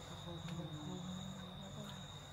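Crickets chirring in a steady high trill, with a second, higher trill that breaks off and starts again, over a faint murmur of voices.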